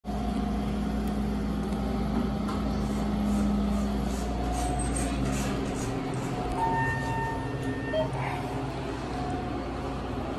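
Steady low machinery hum of a ThyssenKrupp hydraulic elevator, its pitch shifting about six seconds in, with a short run of electronic tones a little after that.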